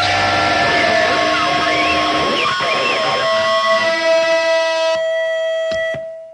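Electric guitar feedback ringing out as a live punk song ends: held tones with wavering squeals that rise and fall, settling into one steady tone about halfway through, then two sharp clicks near the end.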